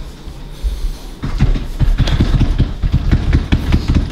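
Rapid, irregular stomping and tapping of feet on a tile floor, starting about a second in and continuing as a fast run of low thumps. It is a man's reaction to the burn of a super-hot pepper chip.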